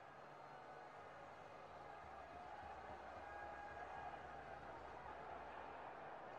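Faint, steady outdoor background noise with a low hum, barely above silence.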